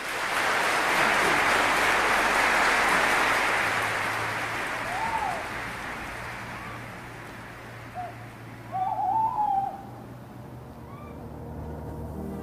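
An owl calling, a single arched call about five seconds in and a quick run of calls near the nine-second mark, over a broad rushing noise that is loudest in the first few seconds and then fades.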